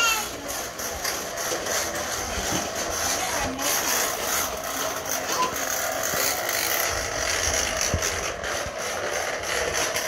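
Plastic toy push lawn mowers clattering and clicking steadily as they are pushed over a concrete floor.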